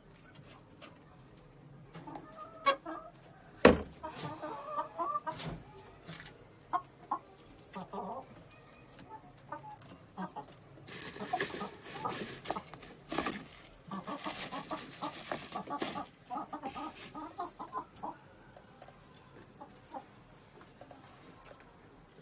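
Giriraja hens clucking in short bursts, with clicks and rustles of eggs and a container being handled; a sharp knock about four seconds in is the loudest sound.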